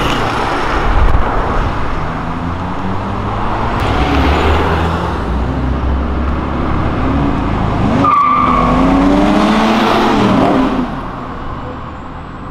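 Cars driving past on a city street, their engines revving as they pull away. About eight seconds in, one accelerates harder, its engine note rising.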